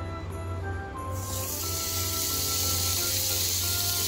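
Marinated chicken breast laid in hot ghee on a ridged grill pan, sizzling with a steady hiss that starts suddenly about a second in. Soft background music plays underneath.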